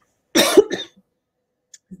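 A woman coughs once, a short sharp cough.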